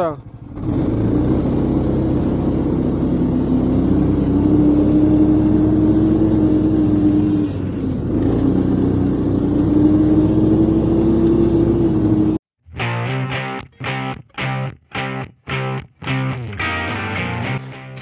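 The Uragan motor-towing device's 15 hp engine running under load while driving through snow, its pitch rising and falling a little. About twelve seconds in it cuts off abruptly and choppy, rhythmic music follows.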